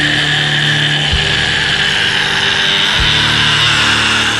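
Raw black metal: a dense, buzzing wall of distorted guitar over held low notes. The low notes shift about a second in and again near three seconds.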